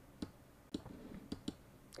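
Four faint, short clicks of a computer mouse, spread unevenly across two seconds.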